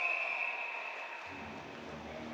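A referee's whistle held as one long steady high note, stopping play; it fades out a little over a second in. Arena music with a low bass line starts just after.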